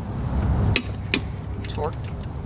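Click-type torque wrench on a wheel lug nut, giving sharp metallic clicks as it breaks over at its 100 ft-lb setting. There are two clear clicks in the middle and lighter ticks near the end.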